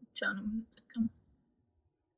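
A voice speaking briefly for about a second, then near silence.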